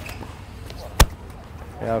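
A single sharp knock about a second in: a tennis ball bouncing once on the hard court.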